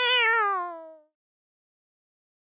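A single cat meow, about a second long, its pitch sliding slowly down as it fades out.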